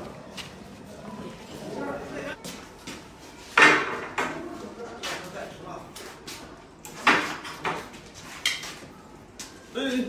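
Plates of food being set down on a glass turntable on a dining table: a few sharp clinks and knocks of china on glass, amid background voices.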